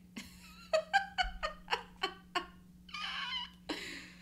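A woman laughing in a quick run of about eight short pitched pulses, then a breathy exhale near the end.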